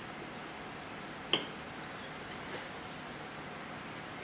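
A single sharp clink of a knife or fork against a plate about a second in, over quiet room tone.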